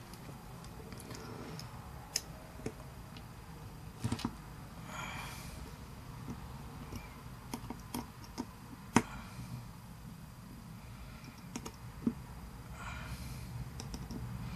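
Scattered small clicks and taps from handling a small carbon-fibre RC helicopter frame and a hex screwdriver while its screws are loosened, the loudest click about nine seconds in.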